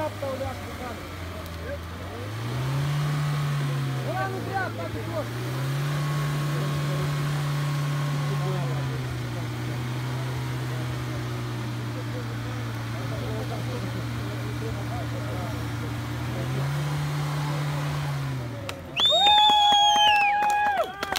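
Suzuki Jimny's petrol engine revving in repeated surges under load as it claws up a steep, muddy bank, with its pitch climbing and dropping back about two seconds in, again from about five to nine seconds, and once more near the end. A loud shout near the end.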